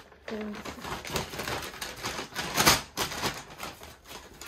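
A paper shopping bag rustling and crackling as it is handled, with the loudest crinkle about two-thirds of the way through. A brief hum of a voice comes near the start.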